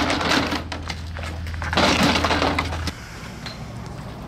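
Skis and poles clattering and scraping against each other and crusted snow as they are handled in a pickup truck bed. There are two loud rattling bursts, one at the start and one about two seconds in. A low steady hum stops about three seconds in.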